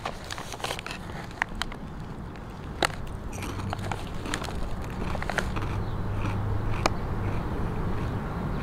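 Barbecue honey truffle chips being bitten and chewed: scattered sharp crunches and crackles, over a low rumble that grows louder toward the end.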